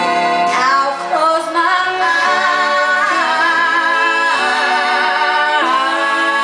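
Female vocalist singing long, held notes live, sliding from one pitch to the next, over a quieter instrumental accompaniment.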